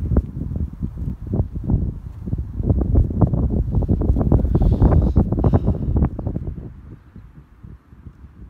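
Wind blowing across the microphone, loud and gusty, dropping away to a much quieter rumble about seven seconds in.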